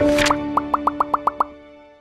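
Soft intro music holding a chord, with a quick run of about eight rising 'bloop' sound effects from about half a second in. The music then fades away near the end.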